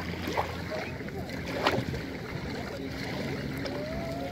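Small waves lapping onto a pebble shore, water washing over the stones, with a couple of brief splashes about half a second and a second and a half in. A steady low hum runs underneath.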